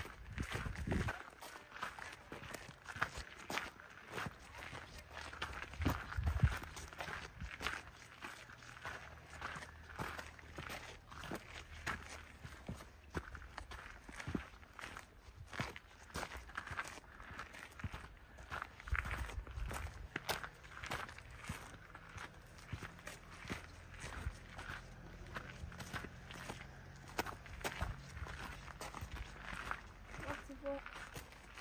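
Footsteps on a gravelly, rocky trail, an irregular run of steps about one to two a second, with a few low rumbles, the loudest about six seconds in.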